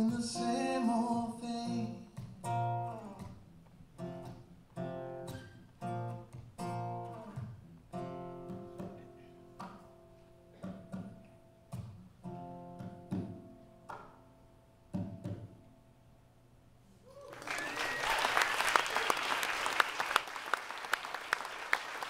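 Acoustic guitar playing the closing chords of a folk song, each strum left to ring out and fade, the last one dying away about fifteen seconds in. A couple of seconds later an audience breaks into applause.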